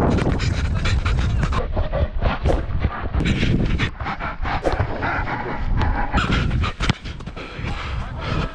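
Rapid, heavy panting of a footballer sprinting with the ball, over running footsteps and wind rumble on a body-worn camera.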